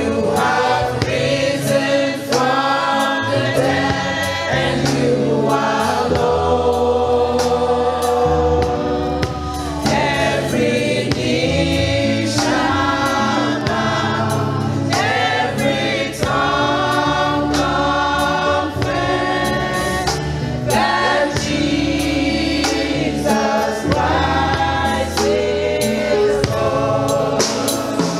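Live gospel praise-and-worship song: a woman sings lead into a microphone, backed by other voices, over a band with low bass notes and a steady beat.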